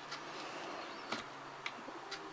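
A few faint ticks from small parts being handled on a workbench cutting mat, over a steady low hiss.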